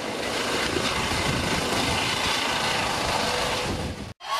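Helicopter lifting off close by, its rotor and engine giving a steady, loud noise.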